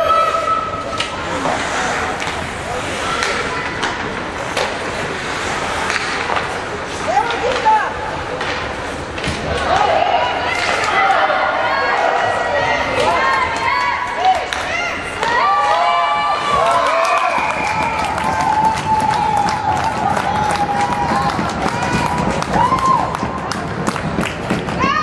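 Youth ice hockey game in an arena: players and spectators calling and shouting, with sticks and puck clacking on the ice and thudding against the boards. The shouting grows busier from about a third of the way in.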